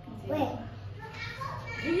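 Speech only: a young child's voice briefly about half a second in, then a woman starting a question near the end.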